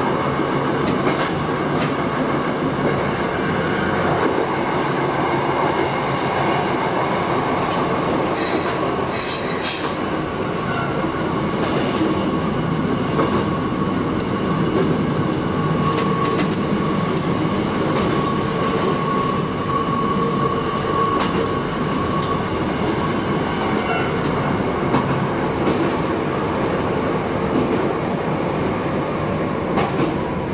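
Shin-Keisei 8000-series electric train running, heard from the driver's cab: steady wheel and running noise with occasional clicks over rail joints. Through the middle a steady high squeal comes from the wheels as the train rounds a curve.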